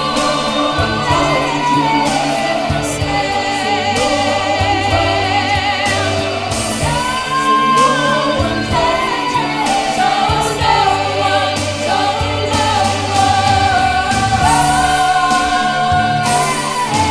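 A choir singing in harmony over a low accompaniment, with long held notes.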